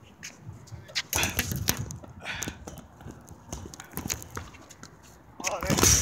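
Irregular knocks and clicks of a phone being picked up and handled close to its microphone, with a short voice sound near the end.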